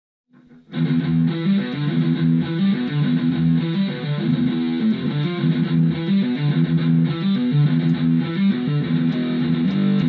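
Electric guitar in E standard tuning playing heavy metal riffs: rhythmic patterns of repeated low notes with quick changes, starting about a second in.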